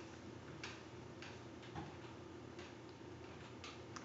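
Faint clicks at uneven intervals over a low, steady room hum.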